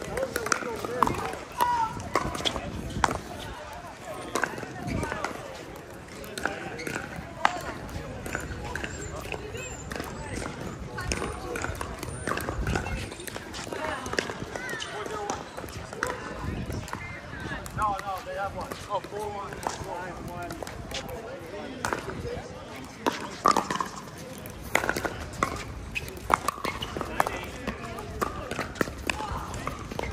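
Pickleball paddles hitting a plastic ball in play, a series of sharp pops at irregular intervals, over indistinct voices chattering in the background.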